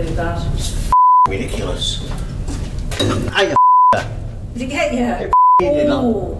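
A man talking, with three short, steady censor beeps blanking out his words about one, three and a half, and five and a half seconds in.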